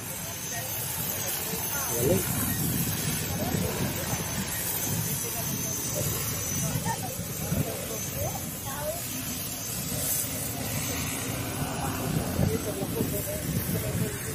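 Steady outdoor hiss with faint, indistinct voices in the background.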